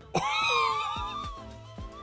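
A man's high-pitched excited squeal at the reveal of a prized card, starting suddenly just after the start and wavering as it trails off over about a second and a half. Background music with a steady beat runs underneath.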